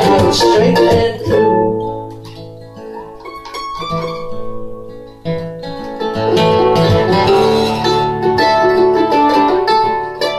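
Mandolin and acoustic guitar playing an instrumental passage together. Dense strumming gives way after about a second to a quieter stretch of ringing, picked single notes, and full strumming returns a little past the halfway point.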